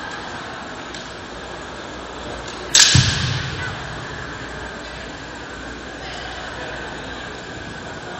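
Steady murmur of a large sports hall, broken about three seconds in by one sharp crack with a thud that rings briefly in the hall: a kendo strike, bamboo shinai on armour with a stamping foot on the wooden floor.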